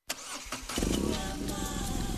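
A motorcycle engine starting: a quieter churn, then it catches under a second in and runs steadily with a rapid pulse.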